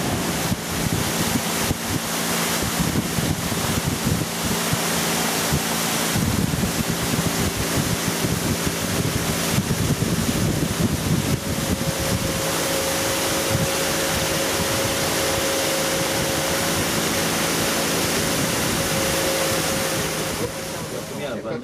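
Small river boat's motor running steadily under way, a constant hum with a higher steady tone joining about halfway through, over wind buffeting the microphone and water rushing past the hull.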